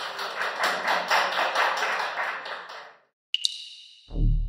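Audience applauding, a dense patter of claps that fades out about three seconds in. After a short silence a bright electronic chime rings and decays near the end.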